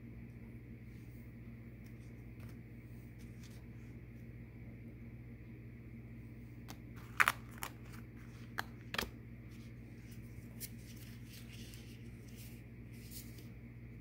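A few sharp clicks and taps about seven to nine seconds in, the loudest first, as cards and small objects are handled on a tabletop, over a steady low hum.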